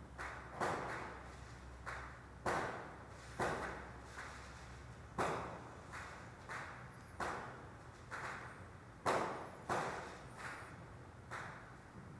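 Repeated heavy bangs of construction work, coming irregularly about once a second, each with a short echoing tail, over a low steady rumble.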